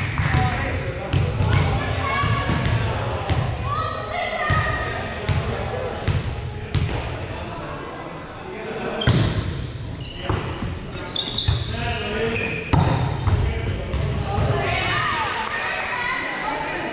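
Volleyball players' voices and calls echoing in a large gymnasium, with repeated sharp thuds of the ball being hit and bouncing on the hardwood floor.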